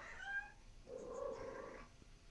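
Domestic cat making two soft meows: a short one at the start and a longer one about a second in.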